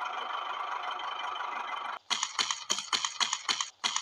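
A steady hiss, then from about halfway a handsaw cutting wood in rapid rasping strokes, about five a second, with a short break near the end.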